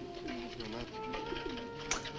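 A caged bird on an old film soundtrack calling in low notes that rise and fall, twice, with a held music chord entering about a second in.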